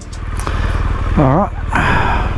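BMW GS adventure motorcycle idling, a steady low pulsing rumble, with a brief voice about a second in and a short burst of hiss near the end.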